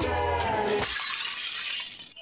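A sung Christmas song breaks off about a second in, and a porcelain vase shatters on the floor: a crash of breaking pieces lasting about a second.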